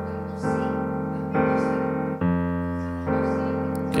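Digital stage piano playing left-hand chord voicings for a 12-bar blues in F: four chords struck about a second apart, each held and slowly fading until the next.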